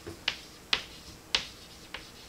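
Chalk tapping against a chalkboard during writing: four or five sharp, irregularly spaced clicks.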